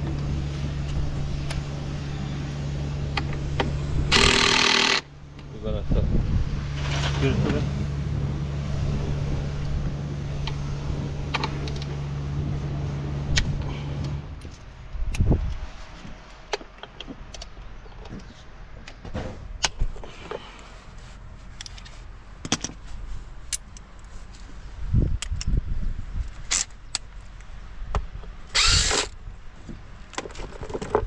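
Cordless DeWalt power tool run in short bursts on the bolts of the engine's timing-belt cover: one burst about four seconds in and another near the end, with clicks and knocks of tools between. A steady low hum runs under the first half and stops about fourteen seconds in.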